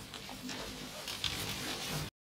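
Faint lecture-room noise at the end of class: scattered soft rustles and shuffling, with a brief click a little past halfway.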